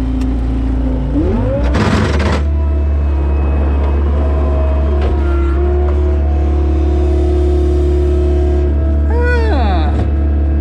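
John Deere 675B skid steer's diesel engine running, heard from the cab. Its pitch rises about a second in, with a short rush of noise around two seconds. Then it holds a steady, higher note while the hydraulics tip the bucket forward to dump manure.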